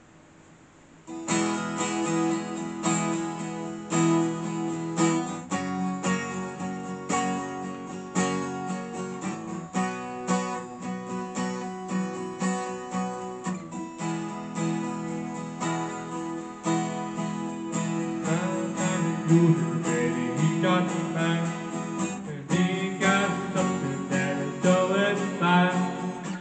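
Twelve-string acoustic guitar strummed in a steady rhythm, starting about a second in.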